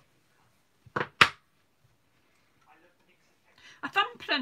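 Two quick, sharp knocks about a quarter second apart, about a second in: hard craft tools being set down on the crafting table.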